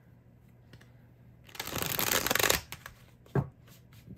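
A deck of tarot cards being shuffled in the hands in one quick burst of about a second, starting about a second and a half in, followed by a short thump near the end.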